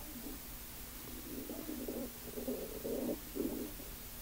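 A man's low, muffled, wordless vocalizing in broken stretches, starting about a second in and stopping just before the end, over a faint steady hum.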